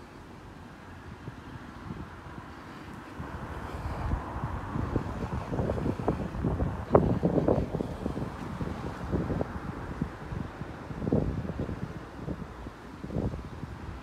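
Wind buffeting the microphone, in gusts that build about four seconds in and come and go.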